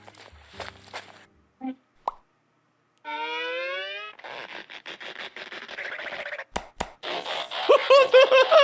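Sound effects from an amateur Pivot stickman animation: a small pop, a pitched tone lasting about a second, a stretch of rustling noise, then two sharp hits as one stickman strikes the other.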